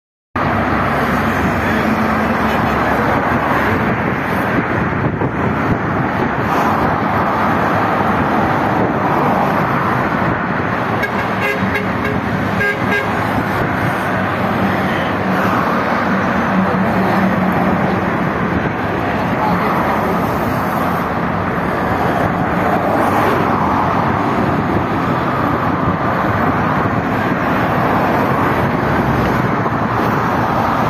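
Steady, dense road traffic: a continuous rush of tyres and engines from cars and lorries passing along a multi-lane highway below. A brief horn toot sounds about halfway through.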